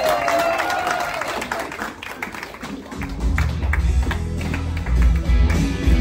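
Audience clapping and cheering. About halfway through, a song starts with a heavy bass beat.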